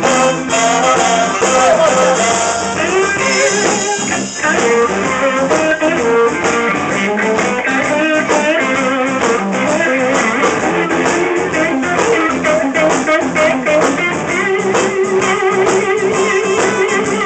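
Live electric blues band playing an instrumental passage, led by an archtop electric guitar playing bent, wavering lead lines over a second electric guitar and bass.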